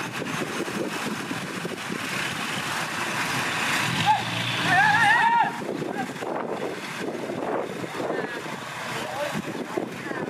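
Men talking over a small bulldozer's running diesel engine in the open. A short wavering call rises above them about halfway through.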